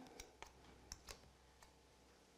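Near silence with about five faint, light clicks of a metal palette knife being handled while spreading filling on a tartlet shell.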